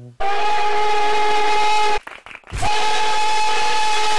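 Nickel Plate Road No. 587 steam locomotive whistle giving two long, steady blasts with a short break about two seconds in. It has a harsh, cracked tone.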